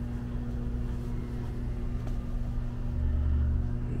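A steady low electrical hum, with a brief swell of low rumble about three seconds in.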